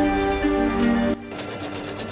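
Usha 550E computerised embroidery machine stitching, its needle running in a fast, even rhythm. Background music plays over it and cuts off suddenly about a second in, leaving the machine's stitching on its own.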